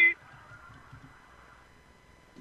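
A man's voice ends a word right at the start. Faint, steady background noise follows and fades out over the next second and a half.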